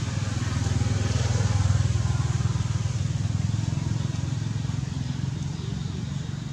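A vehicle engine running, heard as a steady low hum that swells about a second and a half in and then slowly fades, as if passing by.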